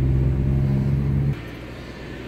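Car engine running, heard from inside the cabin as a steady low drone that drops away suddenly a little over a second in, leaving quieter road noise.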